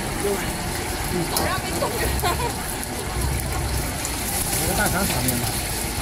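Gas wok burner running with a steady rushing rumble while egg fried rice is stir-fried in the wok, with a few short metal clinks from the ladle and spatula in the wok.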